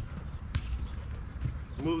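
Soccer ball being touched and tapped by a player's feet on artificial turf: a few dull knocks, the clearest about half a second in, over a steady low rumble.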